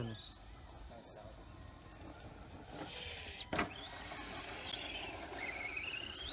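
Brushless electric motor of a radio-controlled 4x4 truck (HPI 4000kv) whining as it accelerates, the pitch rising in the first couple of seconds and again near the end. A single sharp knock about three and a half seconds in.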